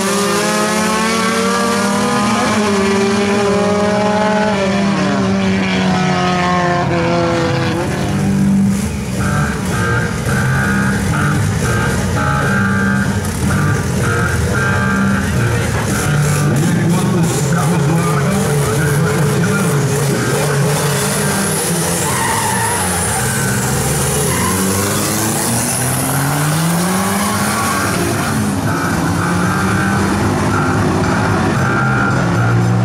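Race car engines at full throttle in a drag race, their pitch climbing and then dropping back at each gear change as the cars pull away. Later another pair of cars launches, and the pitch climbs again near the end.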